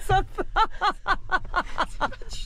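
A person laughing in rapid, high-pitched pulses, about five a second.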